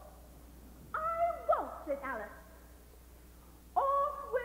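Soprano voice in short, swooping vocal phrases with falling pitch slides, one about a second in and another starting near the end, with quiet pauses between.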